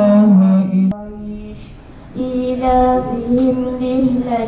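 Quran recitation chanted in a melodic style, with long held notes in a high voice. The voice breaks off with a click about a second in and takes up the next phrase just after two seconds in.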